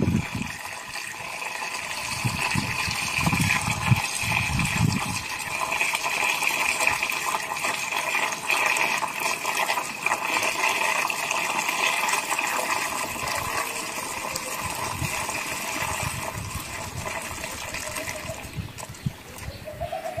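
Liquid poured from a bucket through a plastic-bottle funnel and pipe into a plastic barrel: a steady pouring with a few steady tones in it, easing off slightly near the end.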